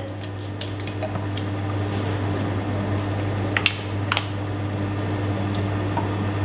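Steady background hum, with a few light clicks and taps from a plastic reagent bottle and glass test tubes being handled. The two sharpest clicks come about three and a half and four seconds in.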